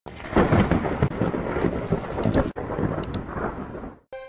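Thunder rumbling and crackling over rain. It briefly cuts out about two and a half seconds in, then comes back and fades away near the end.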